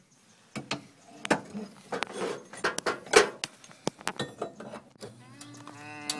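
Crowbar prying at a rear leaf-spring shackle stuck fast in its rubber bushing: irregular sharp metal clicks and knocks with short scrapes. Near the end comes a drawn-out, strained vocal sound from the man straining on the bar.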